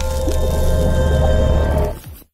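Logo-reveal sting: a short music and sound-design cue with a heavy deep bass and several held tones, fading out near the end.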